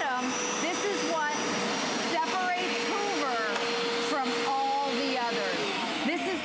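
Hoover Power Scrub Elite carpet cleaner running, a steady motor hum with suction noise. The hum cuts off shortly before the end.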